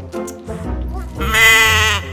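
A comic sheep or goat bleat sound effect, one long wavering call in the second half, over background music.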